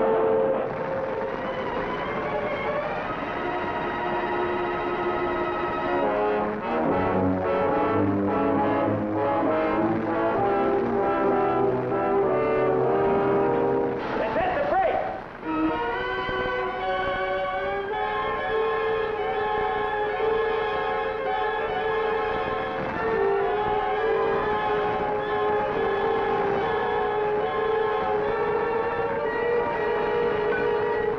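Orchestral film score led by brass, playing long held chords with a short break about halfway through.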